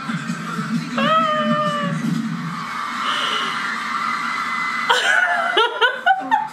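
A woman's high-pitched squeal held for about a second, starting about a second in, over pop music playing in the background; quick giggles near the end.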